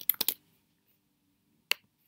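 Computer keyboard keystrokes: a few quick clicks at the start, then one sharp single keystroke near the end.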